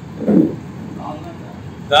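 A man's voice into press microphones in a short pause between phrases: one brief low vocal sound a third of a second in and a short syllable about a second in, over steady background noise.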